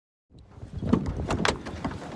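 Strong gusty wind buffeting the microphone, with a few knocks and clunks as a person gets into a pickup truck through its open door.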